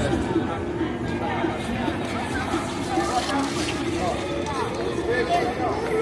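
Background chatter of passers-by on a busy pedestrian street: several voices overlapping at a distance, none close.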